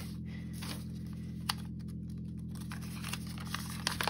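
Light paper crackles and clicks as a small folded square of paper is handled and unfolded by hand, with one sharper click about one and a half seconds in, over a steady low hum.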